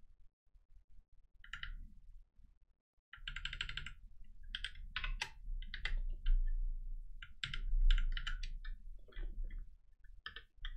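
Typing on a computer keyboard: a few keystrokes at first, then quick runs of key clicks from about three seconds in.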